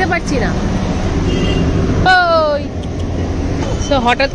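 Steady low rumble of city street traffic, with a brief loud tone falling in pitch about two seconds in.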